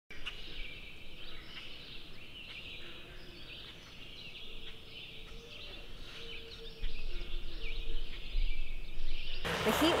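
Morning birdsong: many small birds chirping and trilling, with a few lower, drawn-out calls among them. A low rumble joins about seven seconds in, and near the end the birdsong cuts off abruptly.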